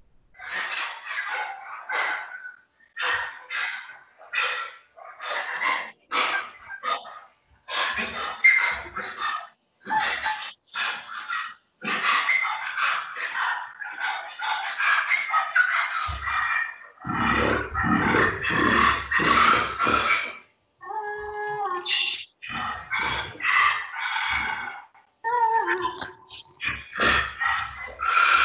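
Sopranino flute played with extended techniques: a broken string of short, breathy air-noise bursts and rasping blown attacks with little clear pitch. About twenty-one seconds in comes a brief steady pitched tone, and there are sliding pitches near the end.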